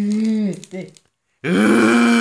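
A person's voice making two drawn-out wordless vocal sounds: a short one at the start, then after a pause a louder one lasting about a second whose pitch rises and falls.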